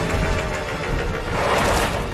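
Dirt bike engine running, with music playing underneath.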